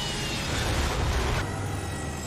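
Cartoon sound effect of a flying RV swooping down and landing hard: a steady, dense rumble and rush with a faint falling whistle in the first second.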